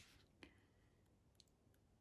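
Near silence, broken by a few faint sharp clicks: one at the start, one about half a second in with a brief ringing tail, and a weaker one about a second and a half in.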